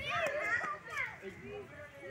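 Children's voices shouting and chattering at play, high-pitched, louder in the first second and softer after.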